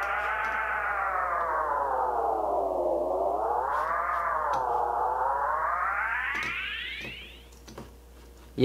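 Lead vocal fed through a tape delay whose delay time is being twisted, so the echoes warp in pitch: a held, distorted tone slides down for about three seconds, wobbles up and down, then sweeps up and fades out about a second before the end.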